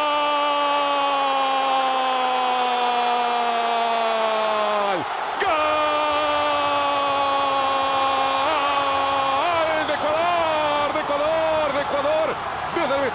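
A Spanish-language football commentator's long, drawn-out goal cry of "gol", held on one loud note that slowly sinks in pitch for about six seconds. After a quick breath comes a second long held cry, which breaks into excited shouting near the end.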